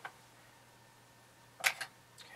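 Quiet room tone with one short click right at the start; a man starts speaking near the end.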